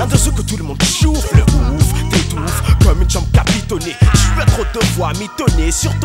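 A 1990s French rap track: rapping over a hip-hop beat, with regular drum hits and a deep bass line.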